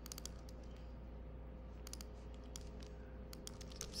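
Computer keyboard being typed on in short bursts of key clicks, as a line of code is entered.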